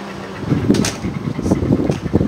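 Wind buffeting the microphone, an uneven, gusty low rumble that picks up about half a second in.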